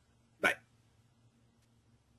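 A single short non-word vocal sound from a man close to the microphone, about half a second in, over a faint low hum.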